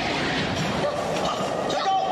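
Loud, steady rushing rumble of a film sound effect for a rockfall in a gorge, with a voice faintly under it.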